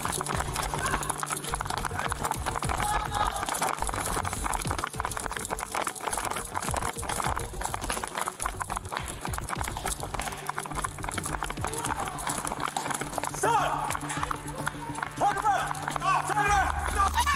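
Rapid running footsteps and the jolting of a body-worn police camera as its wearer sprints after a fleeing person, a dense run of quick knocks and rustles throughout, with background music underneath.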